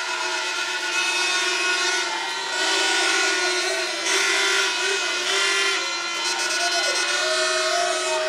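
A rally crowd cheering with many horns blowing, several steady horn notes held together over the crowd noise.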